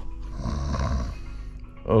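A man's mock snore: one breathy snore lasting about a second, over background music.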